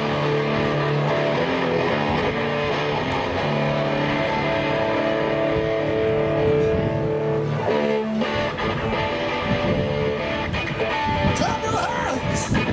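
Live band playing an instrumental passage led by electric guitar: held chords that change about three seconds in and again near the eighth second, after which the guitar strums shorter, choppier chords.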